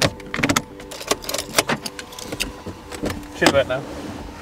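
Sharp clicks and knocks of things being handled inside a car cabin, in clusters about half a second, a second and a half and three and a half seconds in, with a brief voice near the end.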